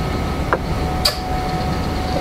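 Steady low hum of room background noise through the microphone in a pause between speech, with a faint click about half a second in and a brief hiss about a second in.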